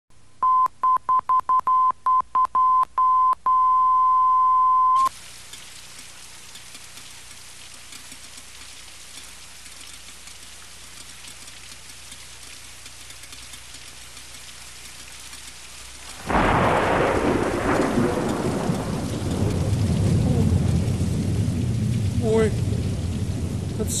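A steady high test beep sounds first as about eight short pips, then is held for a second and a half and cuts off about five seconds in. Then a steady hiss of rain, and about sixteen seconds in a sudden thunderclap that rolls on as a low rumble over the rain.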